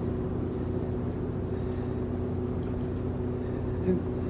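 Steady low mechanical hum with a few constant low tones, like a motor or engine running.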